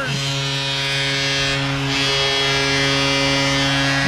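Arena goal horn blowing one long, steady, deep blast, signalling a Maple Leafs home goal.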